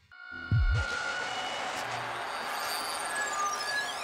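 Electronic music soundtrack: after a moment of near silence, two deep bass hits come in about half a second in, followed by a steady noisy synth wash with a high tone sweeping downward near the end.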